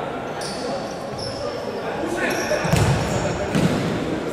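Live futsal play in a sports hall: shoes squeaking on the court floor, voices of players and spectators, and a couple of heavy ball thuds near the end, all with hall echo.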